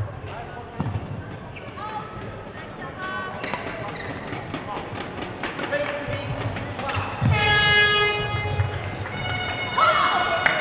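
Badminton rally in a sports hall: sharp racket hits on the shuttlecock and sneakers squeaking on the court floor, with a longer, louder squeal about seven and a half seconds in.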